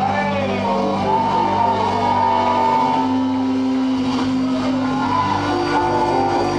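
Live band playing a song with long held chords, from acoustic guitar, electric bass and keyboard.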